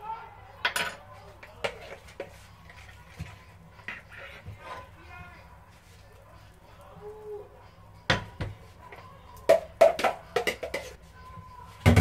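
Kitchenware being handled: a metal spoon knocking and clinking, with a bowl and a frying pan being moved. The knocks come singly at first, then in a quick loud run about eight to eleven seconds in.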